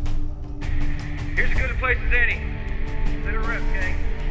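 Film score music with a thin, radio-filtered voice transmission coming in over it about half a second in, broken into short bursts.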